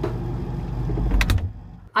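Low steady rumble of a refrigerator standing open, then a couple of sharp knocks a little after a second in as the fridge door is shut, after which the sound drops away.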